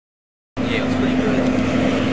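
Silence for about the first half second, then outdoor background noise cuts in abruptly: a steady low hum with faint talking under it.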